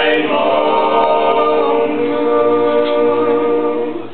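Group of teenage boys singing a barbershop-style tag a cappella in close harmony, holding long chords that change about two seconds in, with the last chord released near the end.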